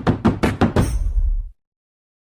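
Rapid percussive hits of a short music sting, about six or seven a second, that cut off abruptly about one and a half seconds in, leaving dead silence.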